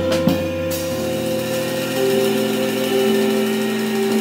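Live jazz trio: a few drum strikes near the start give way to long held notes that shift pitch in steps, with only light drumming under them.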